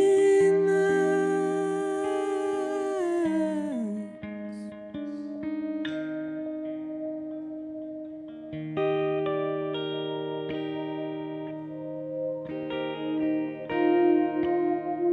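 Instrumental passage of electric guitar and Hohner Pianet electric piano through delay and reverb effects, playing sustained chords. About three to four seconds in the held chord slides down in pitch and fades, and a new set of chords comes in at about nine seconds.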